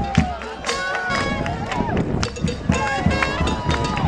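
Live New Orleans-style jazz and blues band playing in the middle of a crowd: drums keep a steady beat, with horns and voices over it and crowd noise all around.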